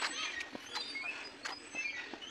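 Many birds chirping, a busy mix of short high chirps and calls overlapping one another, with a few sharp clicking notes.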